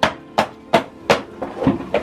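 Rapid, evenly spaced sharp strikes, about seven in two seconds, a steady rhythm of blows like a tool hitting a hard surface.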